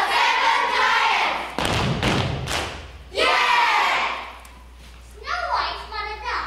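A group of children calling out together in unison, loud and drawn out, with a burst of thuds and knocks in the middle between the two calls.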